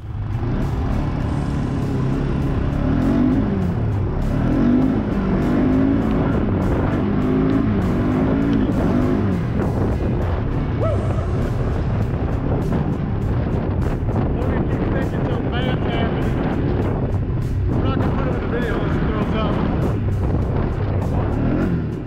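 ATV (four-wheeler) engine running on a trail ride, its pitch rising and falling as the throttle is worked, loudest between about 3 and 9 seconds in.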